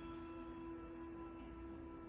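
Faint background music of steady, held tones.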